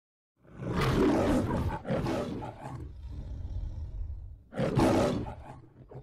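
The MGM lion roar from the studio's logo. A lion roars loudly about half a second in, roars again straight after, growls low for a moment, then gives a last loud roar near the end that dies away.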